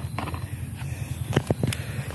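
Wire-mesh rat traps being handled and gathered up: a low rustle of handling with a few short clicks and knocks, several close together about one and a half seconds in.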